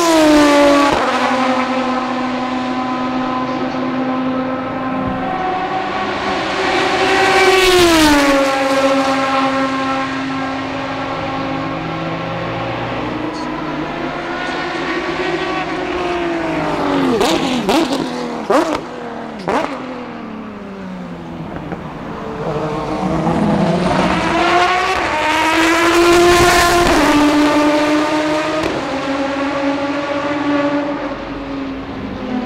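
Aston Martin DBR9 GT1 race cars' 6.0-litre V12 engines at racing speed, passing by with the pitch falling as each goes past: once near the start and again about eight seconds in. A little past the middle come sharp cracks and abrupt jumps in pitch as a car slows and turns. Near the end a car accelerates hard, its pitch rising and then falling as it passes.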